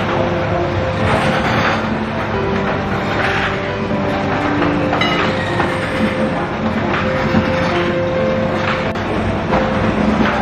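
Oil mill machinery running: a steady mechanical rumble and hum with irregular clattering every second or two.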